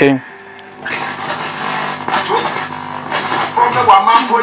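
Home-built radio receiver being tuned: after a brief lull, loud static with broadcast sound comes in about a second in and carries on as the dial is turned.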